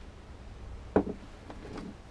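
A sharp knock about a second in, then a softer one and a few faint clicks: small objects being handled and set down on a workbench.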